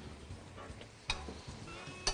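Swordfish and sliced red onions sizzling quietly in a frying pan, with a single knock of a spatula against the pan about a second in.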